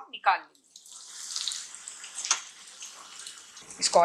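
Arbi leaf koftas sizzling as they shallow-fry in oil in a nonstick pan, a steady high hiss, with one sharp click about two seconds in as they are turned and lifted out. The koftas are fried crisp.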